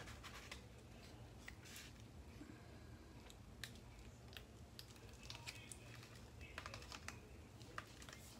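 Near silence: faint, scattered light clicks and rustles from a hand pressing and smoothing a faux-wood paper strip onto hot-glued foam board.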